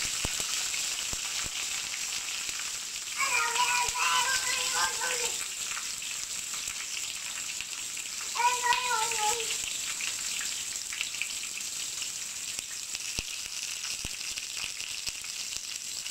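Banana-leaf-wrapped pomfret parcel sizzling in hot oil in a frying pan: a steady hiss with fine crackling.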